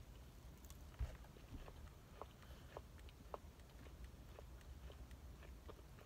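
Faint chewing of a bite of frosted Pop-Tart pastry: scattered small crunchy clicks over a low steady hum, with one soft thump about a second in.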